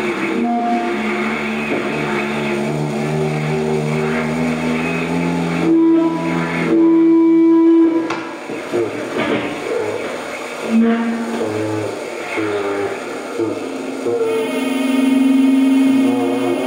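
Live experimental electronic music: layered, sustained electronic tones that shift slowly in pitch, a loud single held tone about six seconds in, then a choppier, broken stretch, and another loud held tone near the end.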